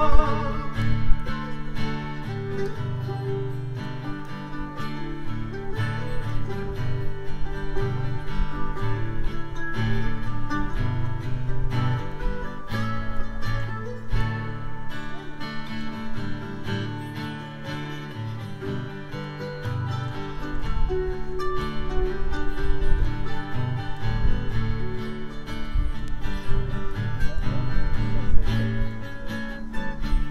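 Instrumental break in a folk-country song: an acoustic guitar strums chords while a mandolin picks along, with no singing.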